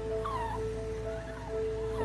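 A puppy whimpering in several short, high, falling whines over soft background music with long held notes.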